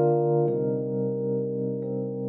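Electronic keyboard playing a slow instrumental passage: a held chord, with new notes struck about half a second in and again near the end.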